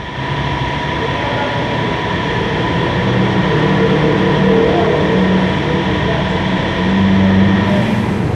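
Steady mechanical running noise from a motorcycle service workshop: a constant high whine over a lower hum that shifts in pitch now and then.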